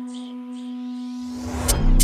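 UK drill instrumental intro: a sustained synth tone with a sweep rising through it. Deep 808 bass swells in about a second in, and a hit near the end drops the beat with hi-hats and heavy bass.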